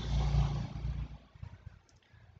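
A low rumble that fades out over the first second or so, leaving near quiet.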